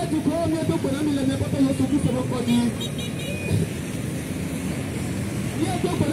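A voice speaking through a portable loudspeaker, over constant street noise from traffic and motorbikes.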